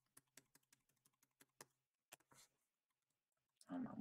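Faint computer keyboard keystrokes and clicks, a quick run of several taps a second over the first couple of seconds.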